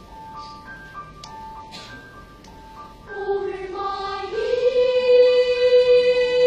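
A children's choir singing: soft high held notes with a few light clicks, then about three seconds in the full choir comes in much louder on a sustained chord that steps up in pitch and holds.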